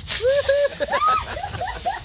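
A shaken champagne bottle spraying with a fizzing hiss that fades over about a second and a half, under people whooping and laughing.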